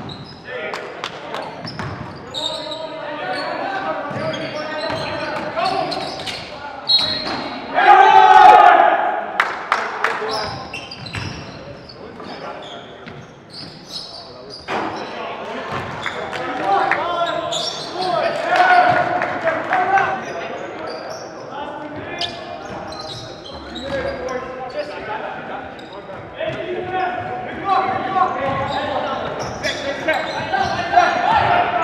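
Live basketball game on a hardwood gym floor: the ball bouncing, and players calling out and chattering throughout, echoing in the hall. One loud shout about eight seconds in is the loudest moment.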